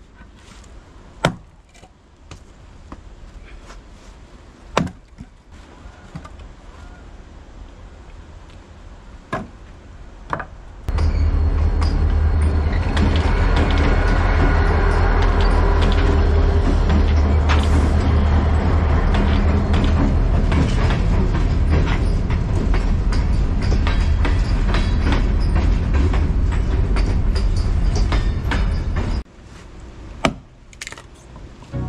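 A few sharp cracks of a maul splitting red oak rounds. Then a train passing close by: a loud, steady rumble with a heavy low end that starts suddenly about a third of the way in and cuts off just before the end.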